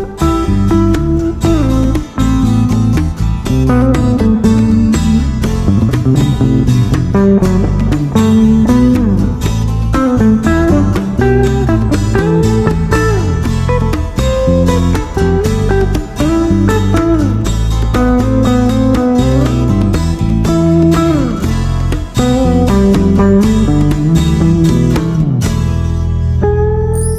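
Instrumental guitar music: an electric guitar playing a lead line with bending notes over bass guitar, hand drums and a strummed twelve-string acoustic guitar.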